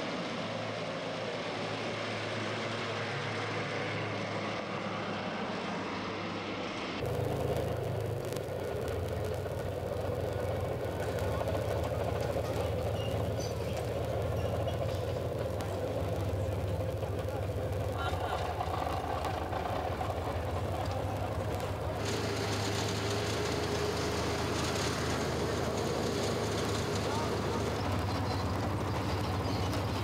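An engine running steadily under indistinct voices, with the background changing abruptly several times as the location sound cuts from shot to shot.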